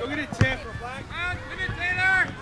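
A soccer ball struck once, a sharp thump about half a second in, among high-pitched shouting voices of players and spectators.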